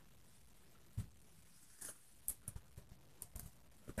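Faint, scattered rustles and soft clicks of a satin ribbon being drawn by hand through vagonite embroidery cloth, mostly in the second half.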